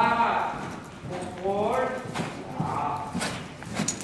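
Hoofbeats of a horse cantering on the soft footing of an indoor riding arena, with a person's voice calling out twice in the first half.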